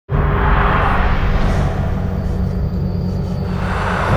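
Ominous horror film score: a low, steady drone with two whooshing swells, one in the first second and one near the end.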